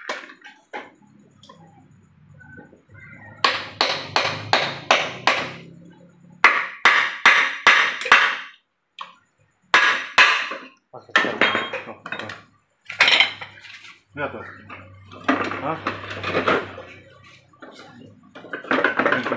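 Metal tools clinking and tapping against an aluminium automatic-transmission case as it is knocked and pried apart, in quick runs of sharp strikes.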